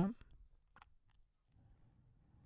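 A computer mouse clicking: a couple of faint, short clicks a little under a second in, over low room noise.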